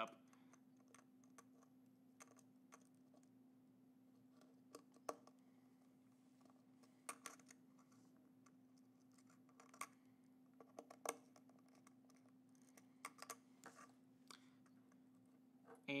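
Near silence with a faint steady hum, broken by scattered small clicks and taps as fingers fit wire leads and a capacitor onto a small circuit board on a table.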